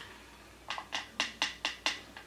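A quick run of about six short, sharp taps, roughly four a second, starting under a second in: a powder brush being tapped against a pressed-powder compact to knock off excess powder.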